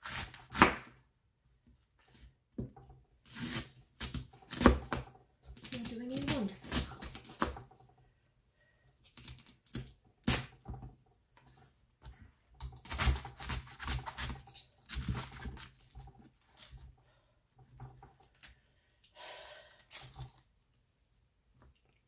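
A kitchen knife slicing through a head of raw cabbage on a cutting board: runs of crisp crunching cuts and knocks on the board, separated by short pauses.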